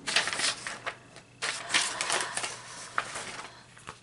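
Hands rubbing and handling a crocheted yarn tote bag on a cutting mat: rustling and scraping in several bursts, the loudest at the start and in the middle.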